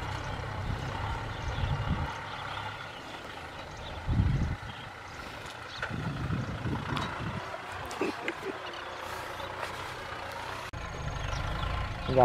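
Kubota M6040SU tractor's diesel engine running steadily under load as it pulls a disc plough through dry soil, with a few louder thumps, the biggest about four seconds in.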